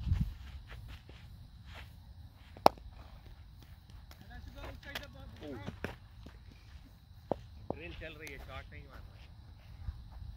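Open-field ambience with low wind rumble on the microphone, faint distant voices and footsteps, and one sharp crack about three seconds in, followed by a few fainter knocks.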